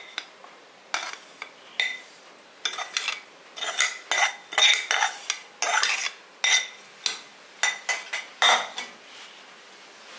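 A steel spoon scraping and knocking against a stainless steel pan, with short metallic rings, as roasted sesame seeds and grated coconut are emptied out of it into a glass bowl. The strokes come irregularly and stop about nine seconds in.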